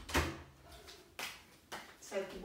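Three sudden knocks or thumps, the first the loudest, the other two close together about a second later.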